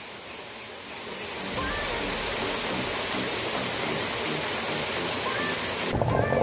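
A steady rushing noise like running water or rain, louder from about a second and a half in, with a few short, faint bird chirps.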